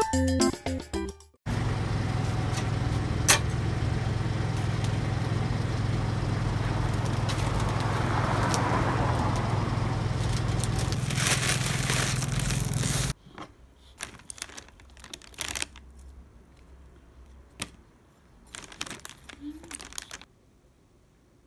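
A music cue ends about a second in. A steady low hum with a wash of noise from a rotisserie chicken oven then runs and cuts off abruptly about 13 s in. After it come short, scattered crinkles and rustles of aluminium foil around a roast chicken.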